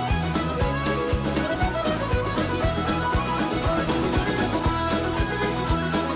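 Background music: an instrumental break in an Irish folk-rock song, a fiddle melody over a steady drum beat.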